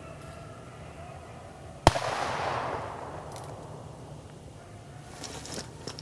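A single gunshot about two seconds in: a sharp crack followed by an echo that rolls away over about a second and a half.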